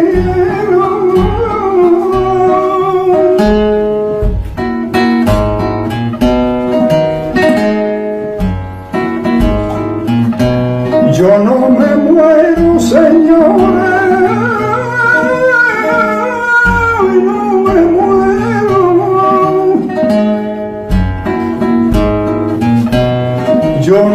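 Male flamenco singer singing long, wavering, ornamented lines, accompanied by a flamenco guitar playing strummed chords and plucked runs.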